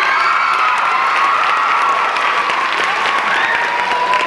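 Audience applauding, with high-pitched cheering held over the clapping for most of the time.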